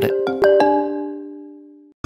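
Stone marimba (lithophone) notes struck a few times, the last about half a second in, each ringing with a clear pitch and fading away before the sound cuts off abruptly near the end.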